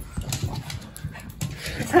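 Small pet dogs making excited greeting noises, mixed with short, irregular clicks and knocks.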